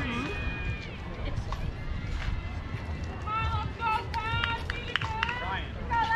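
High-pitched voices calling out and cheering from the field and dugouts, busiest in the last three seconds, over a low steady rumble.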